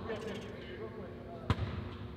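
Low hum of a large, empty arena with faint distant voices, and one sharp knock about one and a half seconds in that echoes briefly through the hall.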